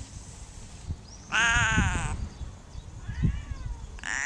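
Domestic cat meowing: one long, loud meow about a second and a half in, then a fainter, shorter meow near the end.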